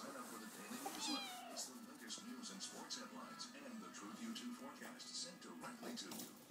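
A kitten meows once, a short falling cry about a second in, while it plays.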